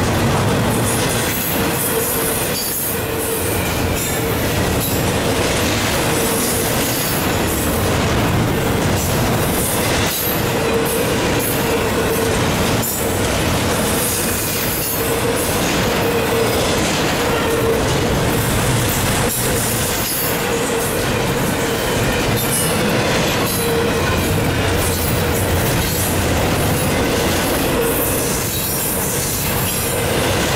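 Double-stack intermodal well cars rolling past close by: continuous loud wheel-on-rail noise, with a whining squeal that keeps coming and going and an occasional sharp knock.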